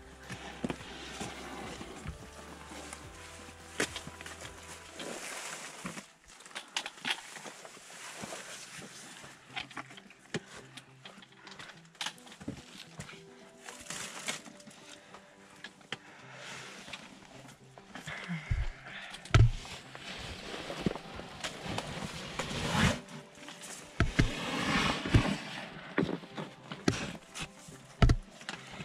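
Hikers scrambling over wet rock: irregular clicks and scrapes of boots and trekking poles on stone and the rustle of packs and clothing, with a few heavy thumps against the microphone in the second half. Faint music runs underneath.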